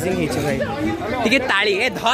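People talking, with speech running through the whole stretch.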